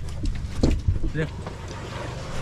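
A low, steady engine hum, with short bits of voices and a few small clicks over it.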